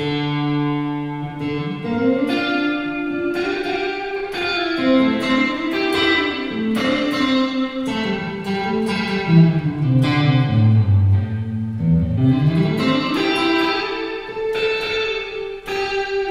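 Electric guitar played through a Caline Mariana modulated reverb pedal on its Hot Springs setting with the parameters at the midpoint: sustained single notes ring into a very heavy reverb wash. In the second half the melodic line slides down in pitch and climbs back up.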